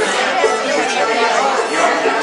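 Chatter of several voices at once in a busy room, with string-band instruments playing beneath it.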